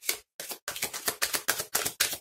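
A deck of oracle cards being shuffled by hand: a fast, dense run of short card clicks and slaps that starts about half a second in.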